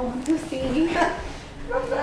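Indistinct voices talking quietly, words not made out, with a high, wavering voice-like sound.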